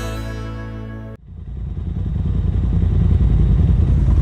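Music fades, then cuts off suddenly about a second in. After the cut, a Polaris RZR side-by-side's engine runs low and rough, heard from the cab, and gets louder over the next second or so.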